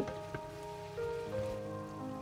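Pork strips with leek and ginger sizzling in a hot wok as they are stir-fried with a wooden spatula, with one light knock of the spatula about a third of a second in.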